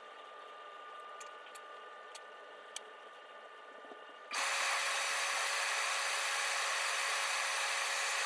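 Faint room tone with a few light clicks, then about four seconds in a loud, steady rushing noise starts suddenly and holds.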